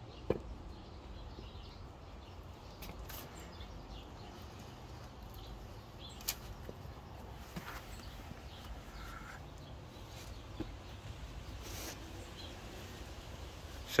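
Faint, scattered clicks and knocks from a wooden board and a leaked Audi magnetic ride shock absorber being pressed down by hand, over a low steady background rumble. The failed shock compresses with no force at all, so the handling makes little sound.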